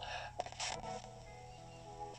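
XHDATA D-368 portable radio's speaker playing a short, faint stretch of music from a broadcast station, held steady in its second half, with a couple of brief noise bursts under a second in.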